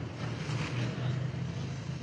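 A car passing on the street: a steady engine hum with road noise.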